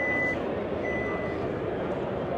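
2024 Kia Sorento's power liftgate warning beeper: two even, high beeps, each about half a second long and about a second apart, signalling that the powered tailgate is moving.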